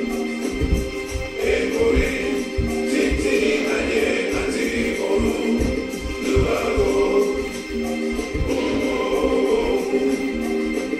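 Recorded gospel choir music playing: a choir singing over its accompaniment, with irregular low thuds underneath.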